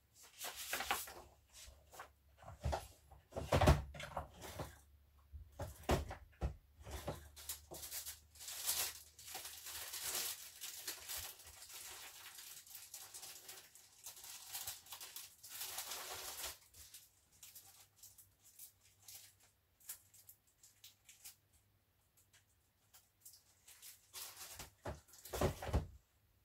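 Rummaging through drawers of paper: knocks, bumps and clicks with sheets of paper rustling, the loudest knock about four seconds in and a longer spell of rustling in the middle.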